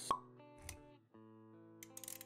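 Intro jingle for an animated logo: a short pop sound effect right at the start, a soft low thud a little later, and sustained music notes.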